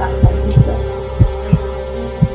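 Suspense sound effect: a heartbeat beating in paired thumps about once a second over a steady low drone.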